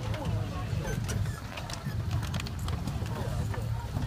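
Passengers' indistinct chatter in an airliner cabin over a steady low hum, with scattered clicks and knocks as overhead bins are opened and carry-on bags pulled out after arrival at the gate.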